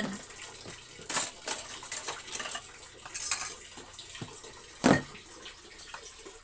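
Kitchenware (pots, dishes and cutlery) clinking and clattering in a few separate knocks as it is handled, with some water splashing.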